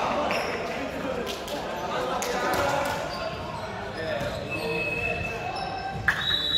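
Volleyball court sounds in an echoing sports hall: players' indistinct voices, a ball bouncing on the hardwood floor, and several short high squeaks of sneakers on the court.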